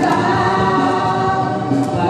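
A man and a woman singing a duet together into handheld microphones, holding long notes.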